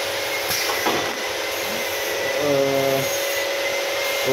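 Mini rotary soda bottle filling machine running, a steady mechanical hiss and hum with a thin high whine. There are a couple of sharp clicks in the first second, and a short low hum of steady tones about two and a half seconds in.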